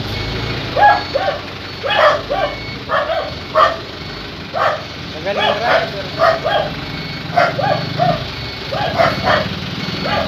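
A dog barking repeatedly, short barks coming about once or twice a second, over a steady low rumble.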